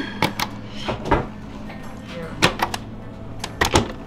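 Vintage VHS tape rewinder's motor running with a steady low hum, which is judged slow. Button and casing clicks sound several times, and the hum cuts off near the end after a pair of clicks.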